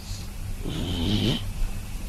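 A man's short, rasping vocal sound, under a second long, in the middle of the pause, over a steady low hum.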